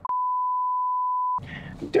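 A single steady, high bleep tone of about a second and a half with all other sound cut out beneath it: an edited-in censor bleep over the driver's words. Speech resumes just after it stops.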